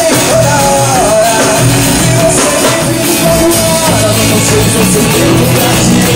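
Live band music: a man singing over acoustic guitar, a jingled hand drum like a tambourine, and drums, played loud and without a break.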